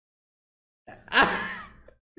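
A man's short, breathy vocal burst, a laughing sigh, starting about a second in and rising then falling in pitch.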